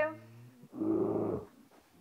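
A bear growling: a growl of under a second, with a second growl starting near the end.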